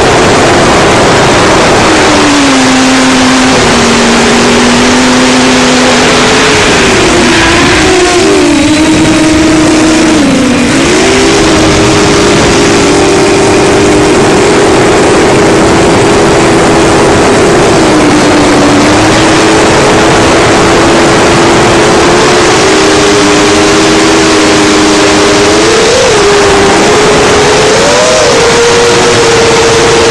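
FPV quadcopter's four Racerstar BR2507S brushless motors driving 7-inch three-blade props, heard from on board the craft: a loud buzzing whine of several close tones that sags and rises with throttle over a steady rush of air. Near the end come two quick throttle blips.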